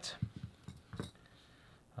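Small scissors snipping cotton wick: a few faint quick snips in the first half second and one more about a second in.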